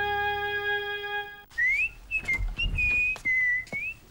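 A held synthesizer chord ends abruptly about a second and a half in. Then a person whistles a short tune: a rising glide into held notes that dip and rise again, with a few light knocks underneath.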